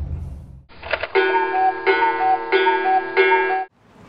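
A short melodic jingle of about three seconds, a repeated figure played four times, that cuts off abruptly. Before it starts, a low car-cabin rumble fades out.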